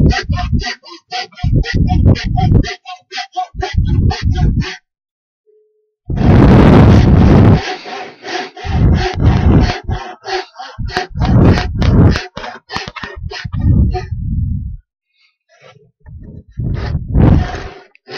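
Handsaw cutting a block of wood clamped in a vise, in quick back-and-forth strokes, about three a second, stopping twice for a second or two.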